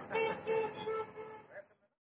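A man laughing: four high-pitched 'ha' bursts about a third of a second apart, each fainter than the last.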